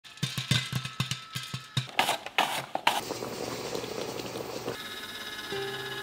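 Automatic rotating roll pan at work: knocking about four times a second, then a steady hiss. Music starts near the end.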